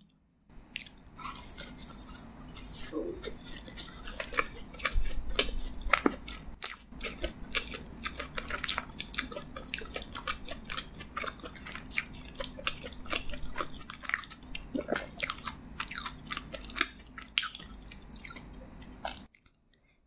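Close-miked chewing of a butter crumb doughnut: a dense, irregular run of sharp mouth clicks and smacks that stops about a second before the end.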